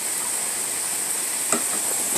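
Pot of water at a rolling boil with corn on the cob, a steady bubbling hiss, with one light knock about a second and a half in.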